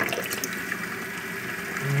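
Hot water from a combi boiler running from a kitchen tap in a strong, full-pressure stream and splashing into a glass in the sink: a steady rush of water.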